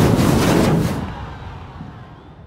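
Logo-reveal sound effect: a loud cinematic hit with a rushing noise and deep rumble that fades away over about two seconds.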